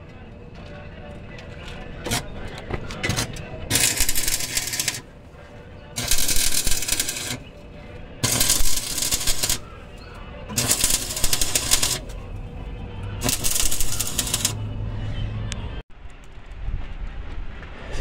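Electric arc welding: the welding arc crackles and sputters in five separate runs of about a second each, with short pauses between them, as a steel bracket is welded on.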